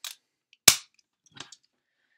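Hard plastic toy parts clicking as the detachable section of the pink ToQ 5gou train from the DX ToQ-Oh set is handled: a faint click at the start, one sharp loud snap under a second in, then a couple of faint clicks about a second and a half in.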